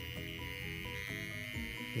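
Electric microneedling pen running with a steady high-pitched buzz, heard over background music.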